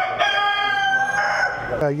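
A rooster crowing: one long call lasting about a second and a half.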